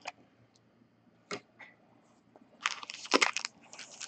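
Crinkling of a trading-card pack's wrapper as it is picked up and handled, a cluster of crackles starting a little over halfway through, after a couple of faint clicks.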